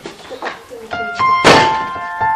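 A door slams shut about one and a half seconds in, a single sharp bang. Held keyboard music notes come in just before it.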